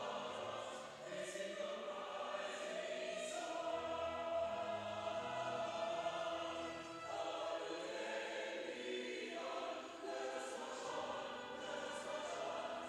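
Group of voices singing a slow hymn in held notes that change every couple of seconds.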